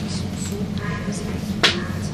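Steady low electrical hum inside a Vienna U-Bahn type T1 car, with a single sharp click about one and a half seconds in.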